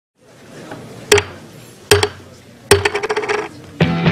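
Three sharp hits about 0.8 s apart, each ringing briefly at a low pitch, the last followed by a quick rattle. A rock song starts just before the end.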